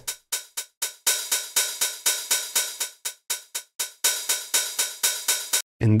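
An open hi-hat sample played in a steady run of about five hits a second, each hit a different length and loudness. Its velocity is randomized and mapped to attack and decay, so some hits are short and closed-sounding while others ring out open. The run stops abruptly near the end.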